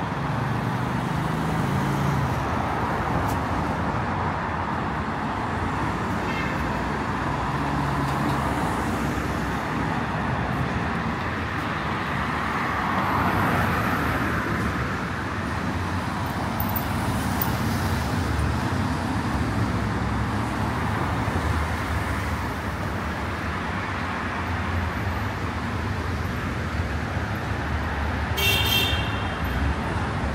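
Steady road traffic on a busy city street, swelling louder about halfway through, with a short high-pitched beep near the end.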